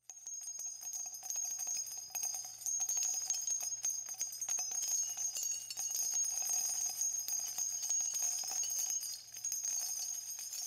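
Small bells jingling and tinkling steadily with many tiny clicks, high and bright, over a faint low hum.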